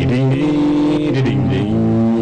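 Live band music with electric guitar: one long held note that slides in at the start and moves to a new pitch just after a second in.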